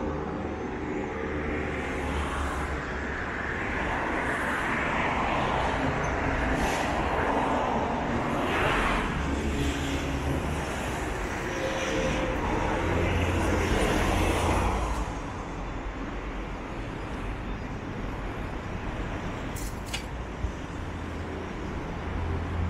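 Road traffic on a city street: cars and trucks passing, loudest in swells from about 4 to 15 seconds in, then a steadier, quieter hum. A short sharp click comes about 20 seconds in.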